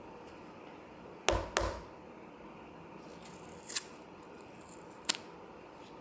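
A plastic ice-pop wrapper being opened and handled: two loud sharp clicks a little over a second in, then crinkling of the plastic with two more sharp clicks.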